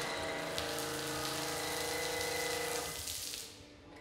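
Steady spraying hiss with a pump's whine under it from a car-gadget test rig, fading away about three seconds in.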